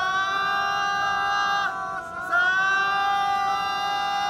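Ceremonial procession music: two long held high notes, the second sliding up in pitch at its start.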